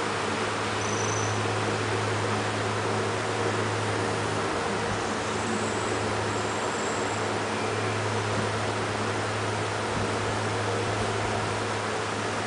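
Steady room noise: a constant low hum with an even hiss underneath, unchanging throughout.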